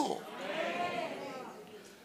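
A faint, drawn-out voice, higher-pitched than the preacher's, held for about a second and a half with a gently rising and falling pitch, in the pause between his sentences.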